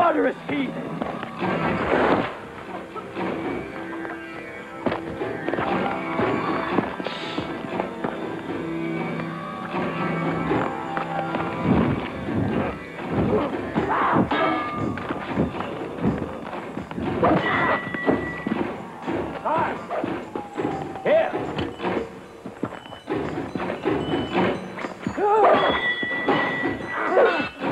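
A film soundtrack of a fight: music plays under repeated shouts and grunts and the thuds of a struggle.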